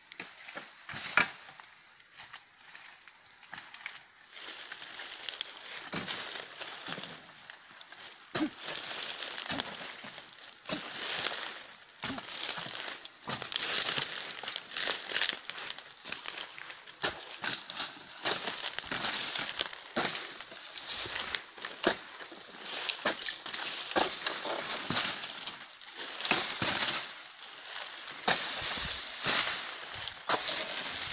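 Oil palm fronds and dry debris rustling and crackling, with many scattered sharp knocks, as an overgrown oil palm is pruned by hand; the rustle grows busier and louder about halfway through.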